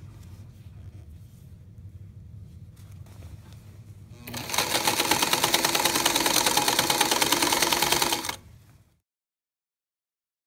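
Electric sewing machine stitching down a stretched waistband casing. After a few seconds of low hum it runs fast and evenly for about four seconds, then stops.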